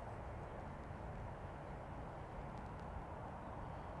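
Quiet outdoor background: a faint, steady low rumble and hiss with no distinct sounds.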